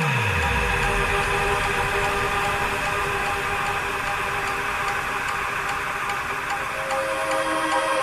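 Psytrance breakdown: the kick drum drops out at the start with a low falling sweep, leaving a held synth pad chord over a faint, steady ticking hi-hat.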